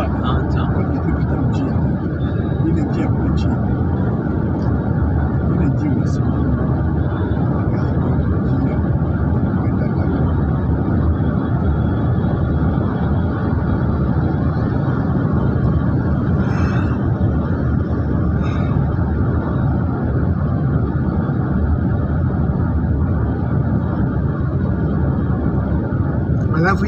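Steady rumble of road and engine noise inside a moving vehicle's cabin, even in level throughout, with a couple of faint ticks around the middle.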